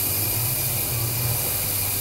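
A handheld rechargeable ultrasonic cleaner (50 kHz, 10 W) running with its probe in a glass bottle of flowing tap water, making a steady high hiss of cavitation in the water over a low steady hum.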